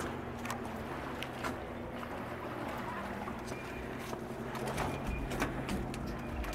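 Magnet-fishing rope being hauled in by hand: scattered light clicks and rubbing against a low steady hum, with a few faint high chirps about five seconds in.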